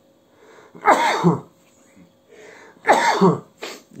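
A man coughing twice into his cupped hands, the two loud coughs about two seconds apart.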